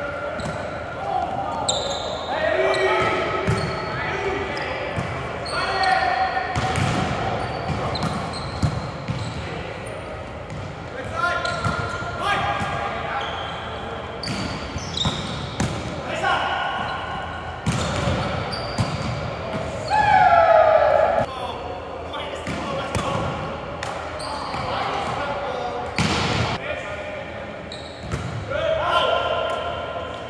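Indoor volleyball rally in a reverberant gym: sharp slaps of the ball being struck, with players calling and shouting on and off.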